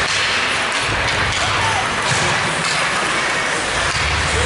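Ice hockey rink sounds: skates scraping on the ice and a few sharp hits of sticks on the puck, over a steady din of rink noise and voices.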